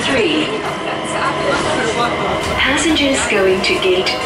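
Speech: several voices talking in a crowded automated people-mover car, over the train's low running rumble.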